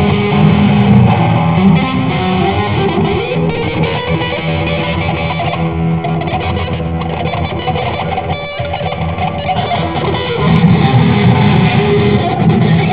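Electric guitar played continuously through a small amplifier, with a dense, loud sound that dips briefly about two-thirds of the way through.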